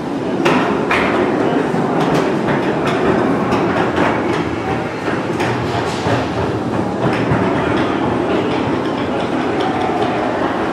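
Irregular sharp knocks and clicks, a few to the second, over a steady background din.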